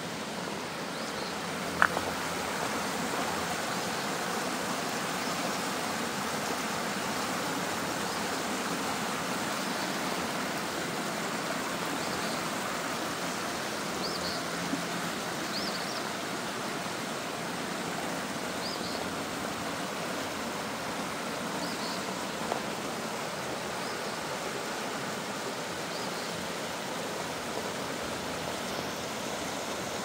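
Shallow rocky creek rushing over stones in small rapids: a steady, even rush of water. Faint short high chirps recur every second or two. One sharp click about two seconds in.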